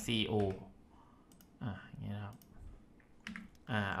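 A few quick computer keyboard keystrokes and mouse clicks, about a second in and again near the end, as the two-letter shortcut C-O is typed.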